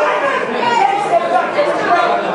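Overlapping voices of a boxing crowd chattering and calling out in a hall, with no single voice standing out, at a steady level.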